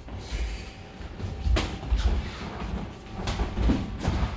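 Boxing sparring in a ring: repeated dull thuds of footwork on the ring floor, with two sharper knocks of gloved punches landing, about a second and a half in and again past three seconds.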